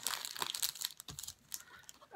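Clear plastic packaging crinkling and rustling as it is handled, in irregular bursts that come mostly in the first second.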